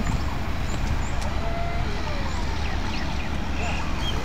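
Steady low rumble of distant road traffic, with no sudden sounds standing out.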